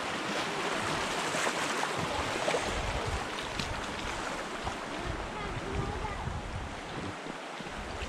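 Rushing water of a shallow river riffle washing around a drifting rowboat, a steady wash that eases a little toward the end as the water calms.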